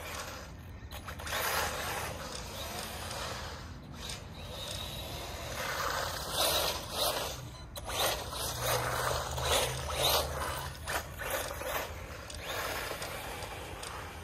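Haiboxing 2997A 1/12-scale brushless RC truck running on asphalt, its motor, drivetrain and tyres making a mechanical whir that swells and fades as it drives about, loudest as it passes close by around eight seconds in.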